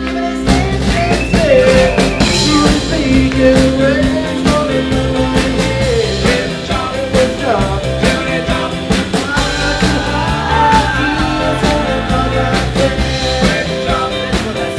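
Live rock and roll band playing: a drum kit keeping a steady beat under hollow-body electric guitar, with singing.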